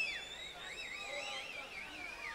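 Members of the audience whistling shrilly: several high whistles overlap, one held steady and another warbling quickly up and down.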